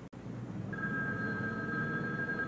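A telephone ringing: one steady two-note electronic ring that starts just under a second in and lasts about two seconds.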